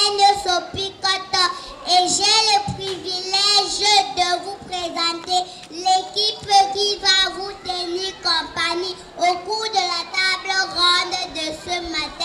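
A young girl singing into a microphone in a high voice, holding long notes in short phrases.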